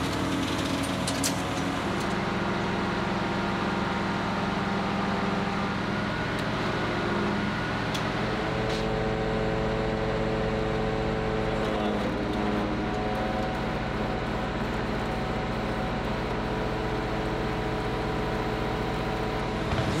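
The engine of an aerial lift truck running steadily while the boom raises the work basket. Its pitch steps up and down a few times.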